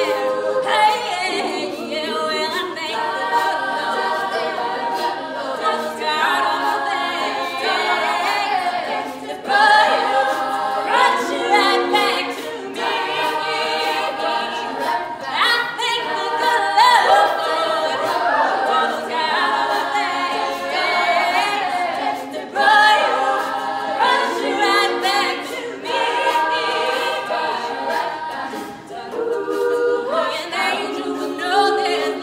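Women's a cappella group singing live: a lead soloist over the group's sung backing harmonies, with no instruments.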